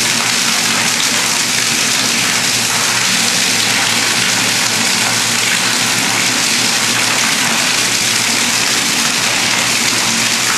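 Liquid pouring steadily into a stainless steel tank, a constant splashing rush, with a low steady hum underneath.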